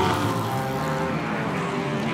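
McLaren 720S GT3 race car's twin-turbocharged V8 running hard at racing speed, a dense engine note holding a fairly steady pitch.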